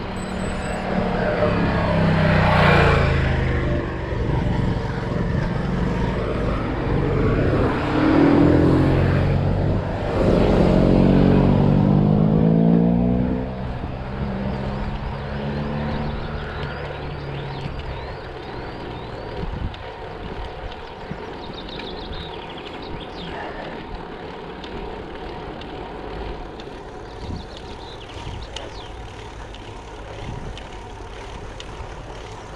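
Motor vehicles passing: engine noise swells and fades several times, loudest about two, eight and eleven seconds in. After that it eases to a steady wind and road noise.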